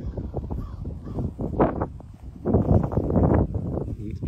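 Crows cawing a few times, over footsteps rustling through dry pasture grass.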